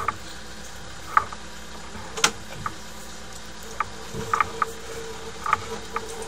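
Sewer inspection camera's push cable being pulled back by hand: irregular light clicks and ticks over a steady low hum.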